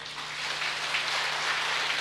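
Audience applauding with a steady, even patter of many hands clapping that starts as the speech breaks off, over a faint steady hum.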